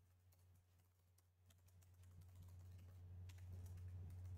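Faint computer keyboard typing: scattered key clicks. Under them runs a low steady hum that grows louder toward the end.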